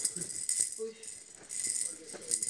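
A toy baby rattle shaken and chewed by a dog, giving a rattling that dies away in the middle and starts again near the end.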